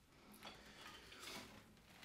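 Near silence with faint handling noise: a light clink about half a second in as a whistle is set down on a windowsill, then soft knocks as a classical guitar is shifted on the lap.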